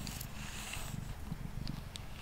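Domestic cat purring steadily close to the microphone while a wire slicer brush is drawn through the fur of its head, giving a soft bristly swish in the first second.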